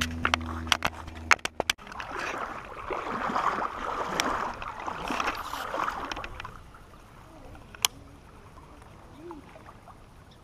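Creek water sloshing and gurgling for a few seconds, starting about two seconds in. A few sharp clicks and knocks come in the first two seconds, with one more near the end.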